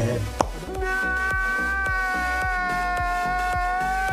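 A man's long, high-pitched wailing cry, held on one pitch, over background music with a steady beat. A single sharp hit comes just before the wail starts.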